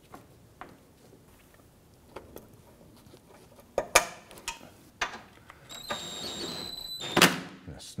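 Small clicks and sharp knocks of a plastic car splash shield being handled and its fasteners pushed in. About six seconds in, a small cordless power tool runs for a little over a second, with a loud knock just after.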